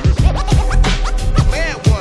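Old-school hip hop beat with turntable scratching: short scratches that sweep up and down in pitch, repeated over heavy kick drums.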